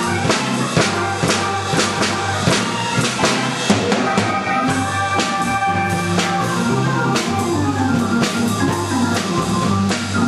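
Hammond M-44 organ playing held chords and a moving bass line over a steady drum beat of about two strokes a second.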